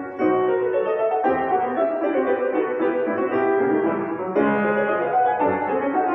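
Classical piano music played by a duo on two grand pianos, with chords changing about once a second.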